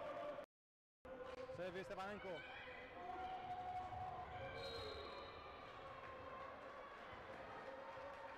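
Indoor sports-hall sound during a volleyball match: a brief voice and ball bounces on the court over hall ambience. The sound drops out completely for about half a second near the start, at an edit cut.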